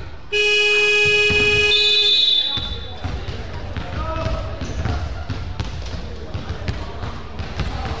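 Gym scoreboard buzzer sounding one steady, piercing blast of about two seconds at the end of the game, cutting off abruptly. Afterwards basketballs are bounced on the wooden court, a run of sharp knocks, under background voices.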